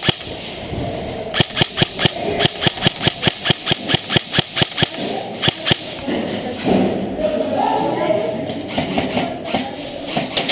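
Rapid shots from a skirmish-game gun, a fast string of sharp cracks at about five a second that starts about a second in and stops near six seconds. Muffled shouting follows.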